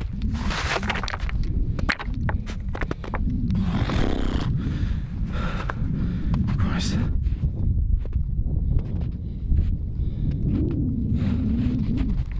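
Wind buffeting the microphone as a low, steady rumble, with footsteps crunching in snow and a man's breathing close to the microphone.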